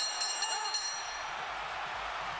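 Boxing ring bell struck to end the round, its high metallic ringing fading within about a second, over the steady noise of the arena crowd.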